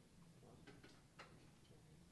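Near silence: hall room tone with a faint low hum and a few faint scattered clicks, the loudest just past a second in.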